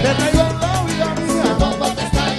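Cuban timba band playing live: bass, drum kit and Latin percussion such as congas and timbales carry a steady dance beat under sustained melody lines.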